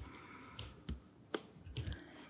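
Quiet room tone with a few faint, sharp clicks: two stand out about a second in, and softer ticks and low knocks follow near the end.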